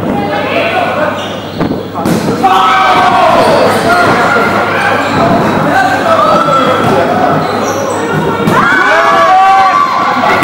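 Dodgeballs bouncing and thudding on a hardwood court in an echoing sports hall, with players shouting calls over them.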